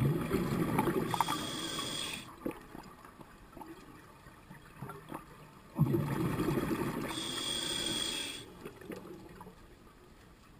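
Scuba diver breathing through a regulator underwater: two breaths about six seconds apart, each a burst of bubbling exhaust with a high hiss partway through.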